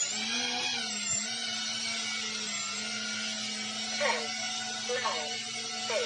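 Micro FPV quadcopter's brushless motors and propellers hovering: a steady whine with a rushing hiss, echoing in a small room.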